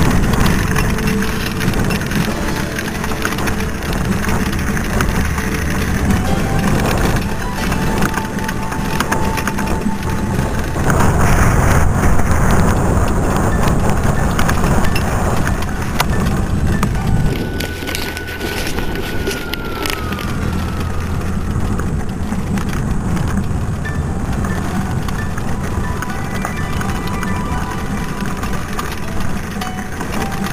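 Wind buffeting a handlebar-mounted camera and the rattle of a mountain bike rolling fast over a loose gravel dirt road. The noise runs throughout and gets louder for a few seconds around the middle.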